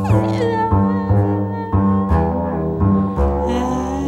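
Free-improvised duet of voice and double bass: a voice slides steeply down in pitch at the start, then holds wavering notes over double-bass notes struck about twice a second.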